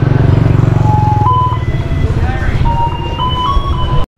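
Busy street traffic: a motor scooter engine running close by with a steady low rumble, while a simple tune of clear held notes stepping up in pitch plays over it. The sound cuts off suddenly at the very end.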